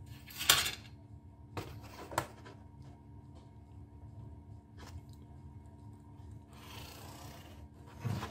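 Hands handling a steel ruler and a pen on corrugated pizza-box cardboard: a sharp knock about half a second in, a few lighter clicks and taps, and a brief scratchy rub across the cardboard near the end.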